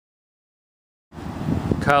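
Dead silence for about a second, then steady outdoor background noise cuts in suddenly, and a man starts speaking near the end.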